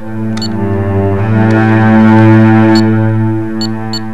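Background music: a sustained low chord that swells toward the middle and eases off near the end, with a few faint high ticks.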